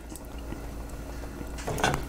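Chopped firm tofu sizzling in hot oil in a frying pan, a steady quiet hiss.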